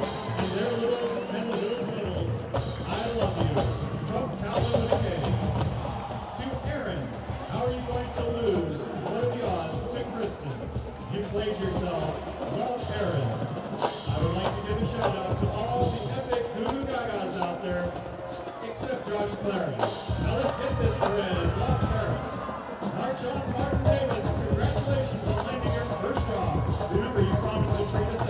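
Marching band music with drums and bass drum as the band marches onto the field, mixed with voices and calls from the crowd.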